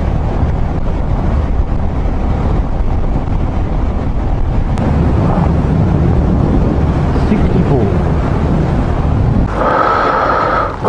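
Motorcycle engine and tyre noise under heavy wind rush on a helmet-mounted microphone, steady at highway cruising speed.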